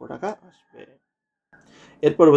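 A voice making short sounds in the first second, then about half a second of dead silence and a faint hiss.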